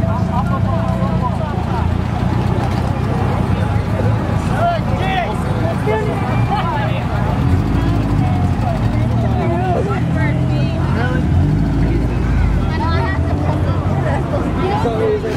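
A car engine running at idle with a steady low hum as the car creeps forward, under the chatter and calls of a surrounding crowd.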